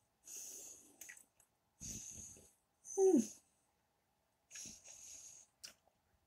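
A person breathing through the nose while chewing food, in several short hissy breaths. About three seconds in comes one louder, short squeaky sound that falls in pitch.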